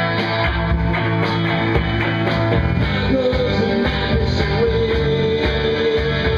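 Live rock band playing: electric guitars, bass and drums, with a long held note rising over the band in the second half.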